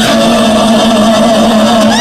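Live Argentine folk band with bandoneon and violin, playing loudly and holding one steady low note.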